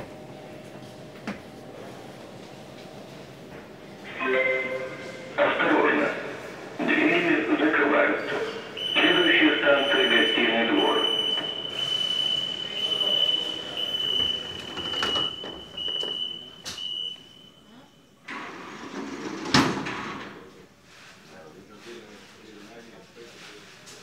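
Voices on a metro platform with closed-off platform doors, then a steady high-pitched warning tone that sounds for about nine seconds. Just after the tone stops, the platform doors slide shut with a sharp thud.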